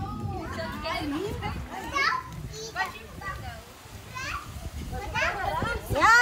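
Children playing, with their voices calling and chattering in short, high, rising and falling bursts, and other voices behind them.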